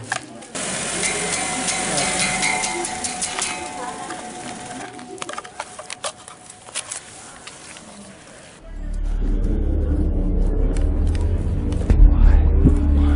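Outdoor ambience with scattered sharp clicks and knocks, then background music with a deep, sustained bass comes in abruptly about two-thirds of the way through and grows louder.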